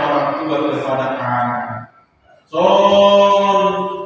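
A man's voice intoning in a sung, chant-like way, in two phrases with held notes. The second phrase starts about half a second after the first breaks off, a little under two seconds in.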